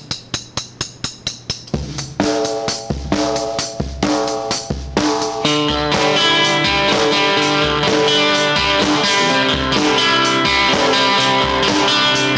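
Rock music with guitar, bass and drums. It opens with sharp hits at a steady pulse, about five a second. Bass and guitar notes come in about two seconds in, and the full band plays from about five and a half seconds.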